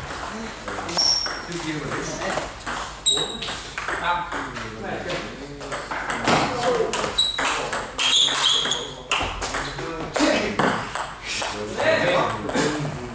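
Table tennis ball being hit back and forth with rubber paddles and bouncing on the table: a series of sharp clicks during a rally, with people talking.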